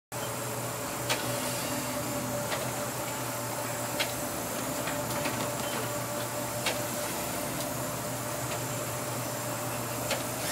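Pilot boat's engines running with a steady drone and a thin steady whine, heard inside the wheelhouse, with a few sharp knocks scattered through.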